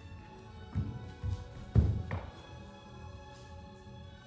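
Music with held notes plays while a dancer's feet land on the studio floor in a few dull thuds, the loudest about two seconds in.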